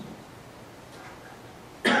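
Quiet room tone, then near the end a man's sudden loud cough.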